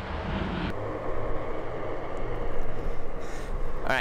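Steady low rumble of wind and wheel noise from riding a small electric board, with a faint steady whine; the sound changes abruptly just under a second in.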